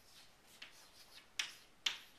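Chalk writing on a blackboard: a few short, sharp taps and scrapes as letters are stroked, the two loudest in the second half.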